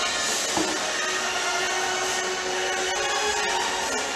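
Background music with steady held notes over a hissy wash, most likely an edited-in tension cue rather than sound from the table.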